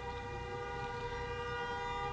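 A street vehicle horn sounding one long, steady note from outside.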